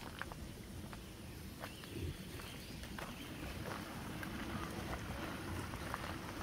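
Light footsteps on a gravel footpath, a few irregular soft taps, over a steady low outdoor rumble.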